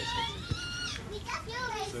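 Young footballers' high-pitched shouts and calls across a pitch during a practice game, with a short thud about half a second in.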